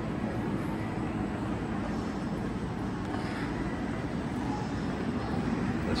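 Steady rushing background noise of a large, near-empty indoor mall concourse, even throughout with no distinct events.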